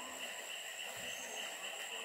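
Rainforest insects droning steadily in two high-pitched bands, a lower one pulsing and a higher one a continuous whine, with a brief low thump about a second in.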